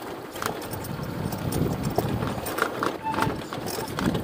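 Motorbike jolting over a rough, stony dirt trail: irregular knocks and rattles with tyres crunching on gravel.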